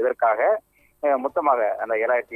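Speech only: a man reporting in Tamil over a telephone line, thin and cut off in the highs, with a short pause about halfway through.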